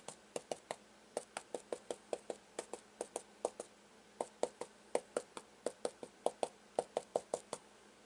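Stencil brush pouncing paint through a stencil onto a fabric towel on a table: quick light taps, about four or five a second in short runs, with a brief pause near the middle.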